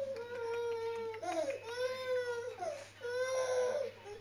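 Baby fussing and crying with a pacifier in its mouth: a string of drawn-out, whiny cries, each about a second long with short breaks, some bending up and down in pitch.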